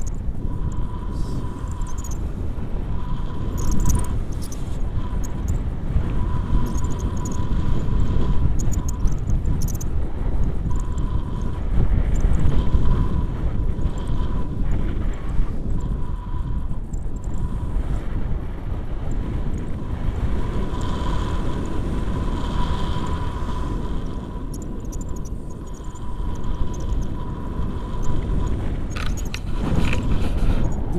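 Wind from the airflow of a paraglider in flight rushing over the camera microphone: a loud, steady buffeting that swells and eases in gusts.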